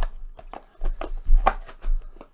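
A handful of light knocks and taps, about six, irregularly spaced, some with a dull thump, like objects being set down or handled on a tabletop.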